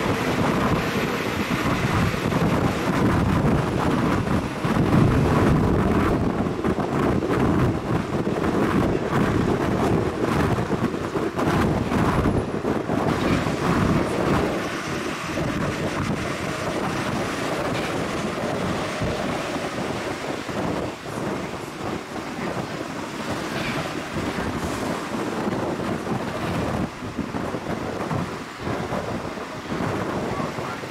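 City bus on the move, heard from inside: steady engine and road noise, louder for the first half and easing a little about halfway through.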